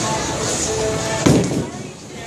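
A bowling ball released at the foul line hits the wooden lane with a single sharp thud about a second in, over the bowling alley's background music and chatter.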